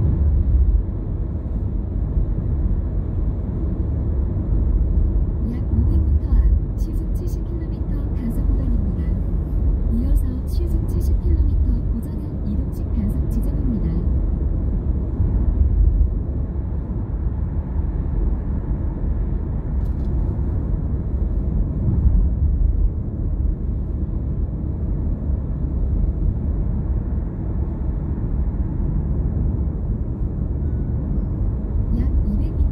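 A car driving along a road at speed, heard from inside: a steady low rumble of tyre and engine noise.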